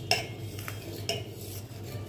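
A metal ladle stirs thin pearl millet porridge in a stainless steel pot, scraping and clinking against the pot's side. There are about three clinks, the loudest just at the start.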